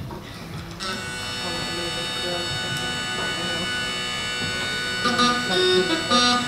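A thump, then about a second in a flat set of uilleann pipes pitched in B strikes up its drones: a steady, buzzing chord held without a break. Near the end the tune's melody notes come in over the drones as the jigs begin.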